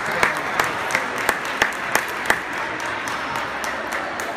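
Hand clapping, about seven sharp, evenly spaced claps at roughly three a second that stop just past the halfway mark, over the steady background noise of a sports hall.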